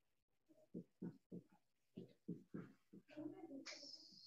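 Faint, short low calls from an animal, repeated every few tenths of a second, with a brief high squeak near the end.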